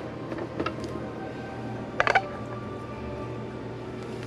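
Quiet background music, with a few short knocks of a metal ice-cream scoop against a plastic blender jar; the loudest clatter comes about two seconds in.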